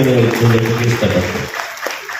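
An audience claps: applause of many hands that starts under a man's amplified speech and carries on alone after his voice stops, about one and a half seconds in.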